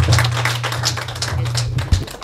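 Applause from a small audience, dense irregular clapping that fades toward the end, over a steady low hum.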